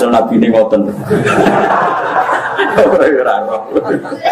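Speech with chuckling laughter running through it.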